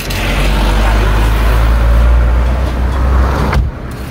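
Loud vehicle rumble and road noise heard from inside a car, with a strong deep rumble, cutting off suddenly near the end.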